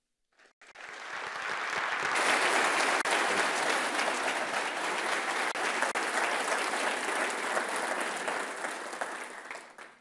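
Large audience applauding. The clapping starts about half a second in, swells to full strength within a couple of seconds, then slowly tapers off near the end.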